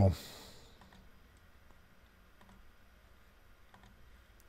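A few faint computer mouse clicks against quiet room tone.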